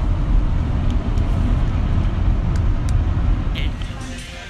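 Steady low rumble inside a car's cabin, with a few faint clicks.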